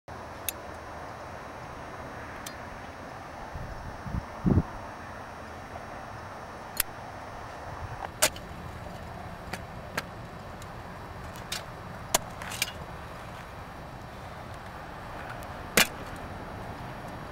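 A shovel digging into gravelly ground: scattered sharp clicks and scrapes at irregular intervals over a steady hiss, with one loud low thump about four and a half seconds in.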